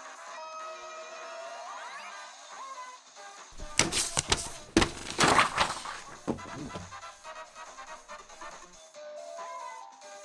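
Light background music, broken in the middle by about three seconds of loud knocks and rustling clatter from handling.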